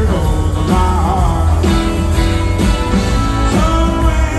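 Live band music played from a concert stage, heard from the audience: an upbeat rock and roll tune with drums, electric guitars and a horn section.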